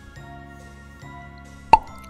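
Soft background music with held notes, then a single short pop sound effect near the end as a new picture pops onto the screen.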